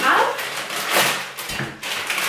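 A plastic bag of frozen food being opened and handled, its packaging crinkling and rustling.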